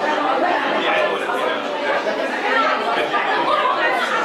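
Several people talking at once, indistinct overlapping chatter with no single clear voice.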